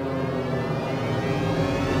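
Swelling opening of a logo sting: a dense whooshing drone that grows steadily louder, building toward a hit.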